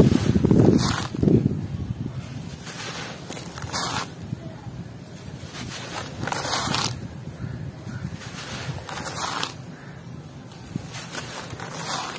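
Hands squeezing and crushing a dry, gritty powder in a plastic tub, loudest at the very start, then letting handfuls pour and sift back down every two to three seconds.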